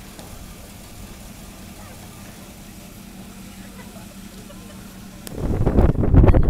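Steady low hum of an idling vehicle engine; about five seconds in it gives way abruptly to loud, buffeting wind rumble on the microphone.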